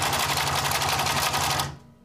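Pincus potentizer, a homeopathic dilution machine, running with a fast, even mechanical chatter over a steady hum. It stops shortly before the end.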